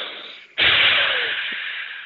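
A man blows out one hard, long breath, starting about half a second in and tapering off over nearly two seconds. It is a candle breath, exhaled forcefully as if blowing out all the candles on a birthday cake.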